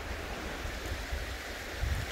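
Wind buffeting the microphone, an uneven low rumble, over a steady outdoor hiss of breeze.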